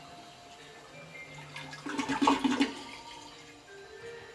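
TOTO C406 toilet flushing: water rushing and swirling through the bowl, loudest in a burst about two seconds in as the bowl drains, then easing off.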